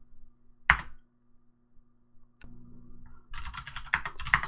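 Computer keyboard keystrokes: one sharp key press about a second in, the Enter key sending the typed npm and bower install command, then a faint click and a run of keystrokes near the end. A low steady hum runs underneath.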